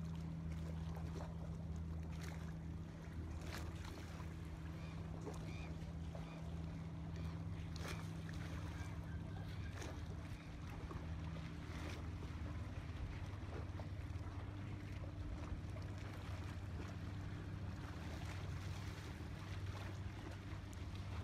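Motorboat engine running with a steady low hum, along with water and wind noise. One of the engine's tones drops out about halfway through.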